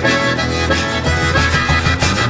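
Live zydeco band playing, with a free-reed instrument carrying the lead over bass and a steady beat.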